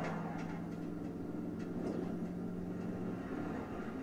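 A low, steady drone over a low rumble from the episode's soundtrack playing on the TV. The drone stops about three seconds in.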